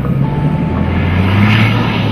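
Engine of a wheeled armoured personnel carrier running as it drives close past on gravel, a steady low drone that grows loudest a little past halfway.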